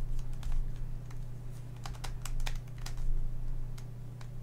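A plastic Redi Cube puzzle being twisted by hand: its corners turn with a quick, irregular run of light plastic clicks and clacks.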